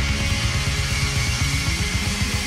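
Rock band playing live at full volume: guitars and bass over rapid, driving kick-drum beats, with no vocal line at this moment.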